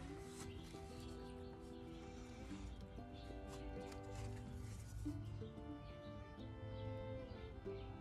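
Soft instrumental background music, held notes changing pitch every second or so.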